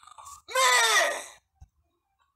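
A person's voice: one drawn-out vocal exclamation, a little under a second long, falling steadily in pitch, with a short faint sound just before it.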